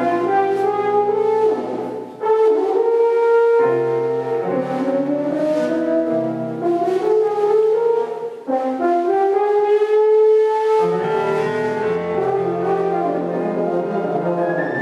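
French horn playing a jazz melody in long held notes that slide between pitches, with short breaks between phrases about two seconds and eight and a half seconds in. Keyboard, double bass and drums accompany it.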